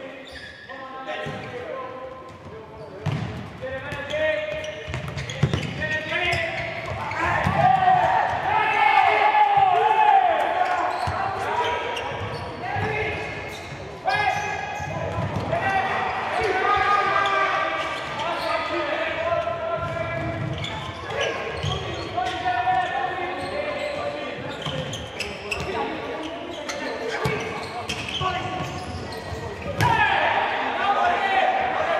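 Voices calling and shouting in a large, echoing sports hall, with the repeated knocks of a futsal ball being kicked and bouncing on the hard court.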